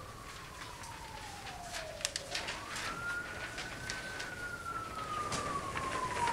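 Emergency-vehicle siren wailing faintly: a single tone that falls over about two seconds, rises again, then falls slowly.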